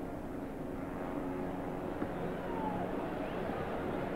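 Steady murmur of a football stadium crowd, with a few faint shouts rising out of it in the second half.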